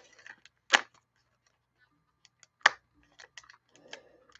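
Foil wrapper of a Donruss football card pack crackling as it is handled: two sharp crinkles, about a second in and near three seconds in, with a few faint ticks after the second.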